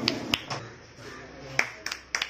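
A few separate sharp clicks over a faint background murmur.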